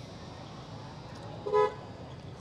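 Steady street traffic background with a single short vehicle horn beep about a second and a half in.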